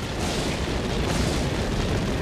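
A loud, harsh rushing blast of noise, used as a dragon's frost-breath effect, swelling twice. It is likened to a car crash and to someone blowing straight into a microphone.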